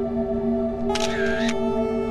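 Ambient background music with steady, sustained tones. About a second in, a short sound effect lasting about half a second is laid over it as the slide changes.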